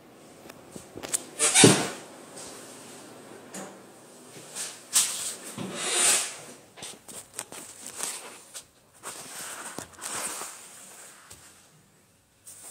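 Handling noise from a phone being adjusted and repositioned by hand: irregular knocks, bumps and rustling, the loudest a bump about one and a half seconds in.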